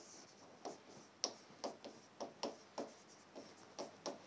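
A pen writing a line of text on a board: a faint run of about ten short strokes, roughly two or three a second.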